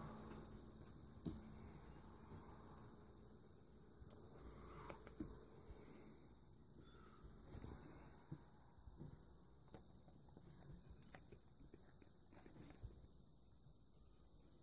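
Near silence: faint room tone with scattered small taps and clicks of hands spreading wet onion slices over a deep-dish pizza in a cast iron skillet.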